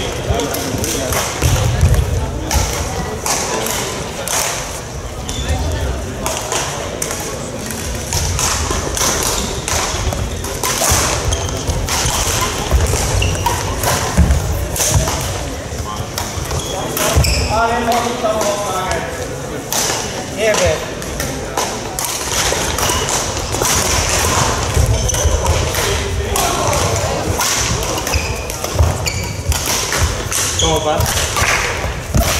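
Badminton play in a large sports hall: repeated short, sharp racket hits on shuttlecocks and thudding footfalls on the court floor, with voices in the background.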